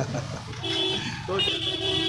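Busy street traffic with a vehicle horn honking: a short toot a little over half a second in, then a longer, held honk from about a second and a half in.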